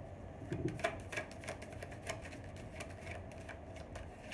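A tarot card deck being handled in the hands, a series of light, irregular clicks and snaps as cards are shuffled and drawn.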